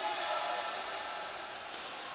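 Steady, echoing indoor pool hall noise during a water polo game: players splashing and swimming, with faint distant calls.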